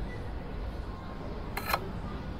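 A steady low rumble with one short, sharp click about three-quarters of the way through.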